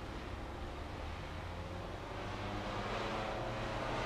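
Steady outdoor background noise, a low rumble with a hiss over it, slowly growing louder.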